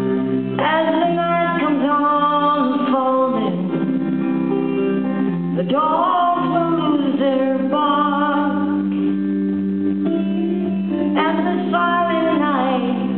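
A woman singing live with her band over sustained electric guitar chords. Her sung lines come a few seconds at a time, with short pauses between them.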